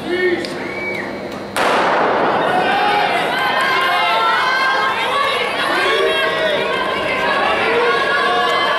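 A starter's pistol fires once about a second and a half in, ringing through a large indoor hall and signalling the start of a sprint race. Spectators shout and cheer right after.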